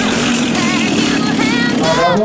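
A motorcycle engine running at a steady pitch, mixed with electronic music whose beat has dropped out, leaving a wavering melody line.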